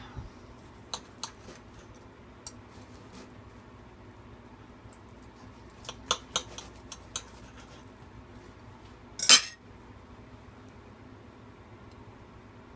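Steak knife and fork clinking and scraping against a ceramic plate while cutting through a cooked hamburger patty: scattered light clicks, a quick cluster around six to seven seconds in, and one louder, longer scrape about nine seconds in.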